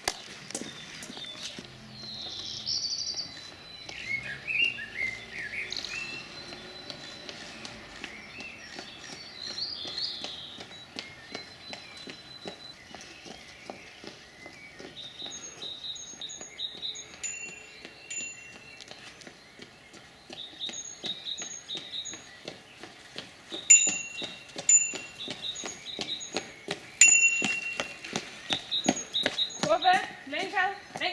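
Songbirds chirping, with short high notes repeated in quick series, most often in the second half. A steady patter of faint clicks runs underneath.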